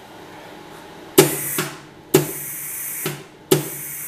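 MIG welder torch triggered three times with the gas bottle open. Each pull starts with a sharp click, and the argon-CO2 shielding gas hisses from the nozzle along with the wire feed motor for about a second.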